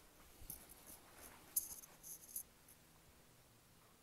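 A few faint, light clicks and rustles in the first half, the sharpest about one and a half and two and a half seconds in, then quiet room tone.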